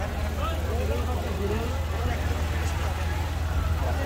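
Motorcycle engine running steadily at low speed, a low even hum, with the chatter of many voices over it.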